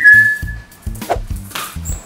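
A man whistling one high note for about a second to call his dog, the pitch falling slightly, over background music with a steady beat.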